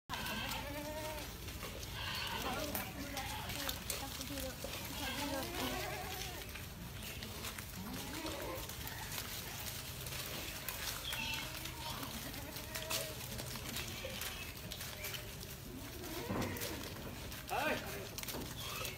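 A herd of goats bleating several times, in scattered calls, as the animals mill about together.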